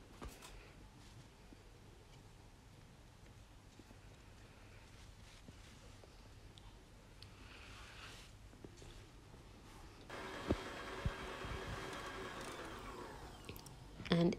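Faint scraping and light knocks of a spatula in a stainless-steel stand-mixer bowl, then about ten seconds in the stand mixer's electric motor hums for about three seconds with two sharp knocks, dropping in pitch as it winds down.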